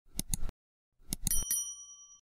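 Subscribe-button sound effect: two quick clicks, then a short run of clicks ending in a bright bell ding that rings on for about half a second as it fades.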